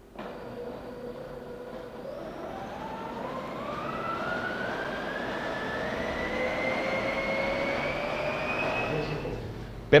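Electric blender motor puréeing cooked asparagus into a smooth cream. Its whine climbs gradually in pitch over several seconds, then stops shortly before the end.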